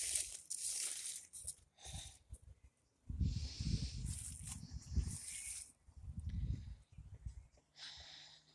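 Dry fallen leaves rustling and crackling, with irregular low thumps and handling noise from about three seconds in.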